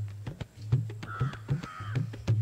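Two short bird calls about a second in, over a low steady hum.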